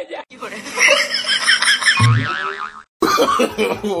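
Comedy sound effects laid over the footage: a wavering, laugh-like cartoon effect with a short low thud about two seconds in. After a brief silence comes the start of a voice clip saying "Oh, no, no, no" near the end.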